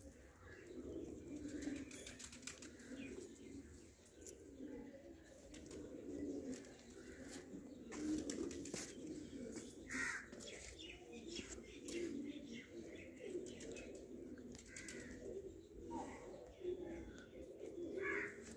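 Domestic pigeons cooing, a faint, low rolling murmur that keeps going, with a couple of short higher calls about ten seconds in and again near the end.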